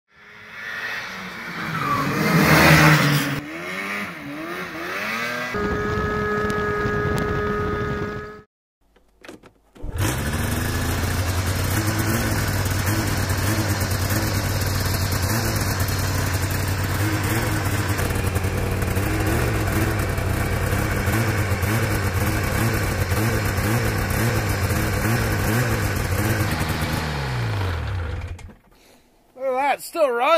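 Old Arctic Cat Phazer snowmobile engine running steadily at idle, its pitch wavering a little; this is its first run in about a year. Near the end it is shut off and winds down.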